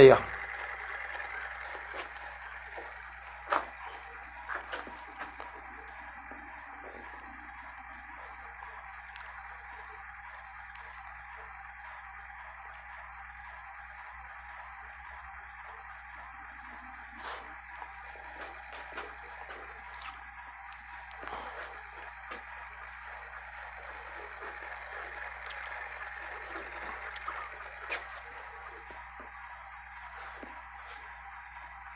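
Homemade magnet rotor, a small plastic PET bottle fitted with magnets and turning on a metal axle, running with a steady whir and a few light ticks now and then.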